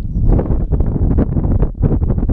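Wind buffeting the microphone: a loud, gusty low rumble that rises and falls.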